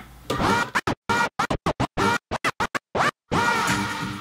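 A music track played through Serato DJ and scratched from a turntable using digital vinyl control. The track starts, then from about a second in is cut in and out rapidly by a string of abrupt silences, and plays on steadily again near the end.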